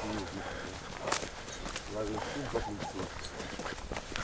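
Low, indistinct talking, with footsteps and a few sharp snaps of twigs while walking through dry brush.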